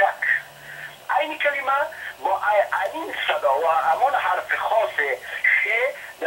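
Speech: a person talking steadily, with a brief pause about half a second in.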